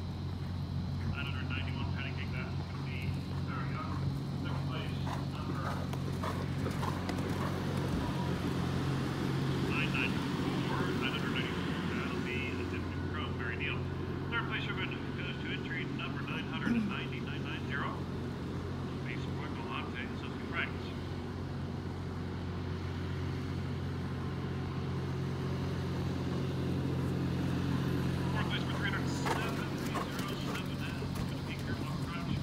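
A steady low motor hum runs throughout, with faint, indistinct voices over it.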